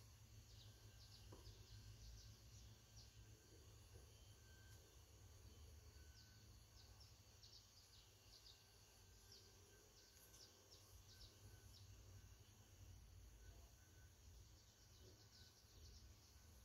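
Near silence: faint outdoor ambience with a low steady rumble and many small, high bird chirps scattered throughout.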